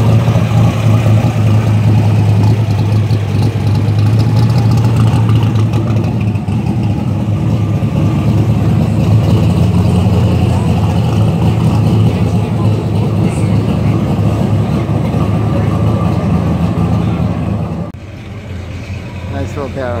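Black 1932 Ford three-window coupe hot rod's engine running loud and steady with a deep low rumble as the car rolls slowly by. The rumble drops away suddenly near the end.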